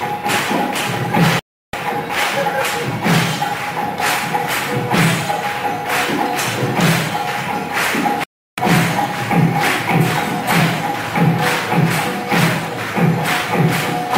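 Kirtan music: a regular drum beat under bright, clashing hand cymbals, with a steady held tone above. The sound cuts out completely for a moment twice, about a second and a half in and again about eight seconds in.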